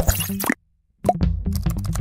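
Logo intro sting: a short swoosh-like transition effect that cuts off about half a second in, a brief silence, then electronic music with drums starting again about a second in.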